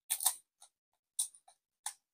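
Foil booster pack wrapper crinkling as it is handled: a short rustle just after the start, then two brief crackles, one a little past a second in and one near the end.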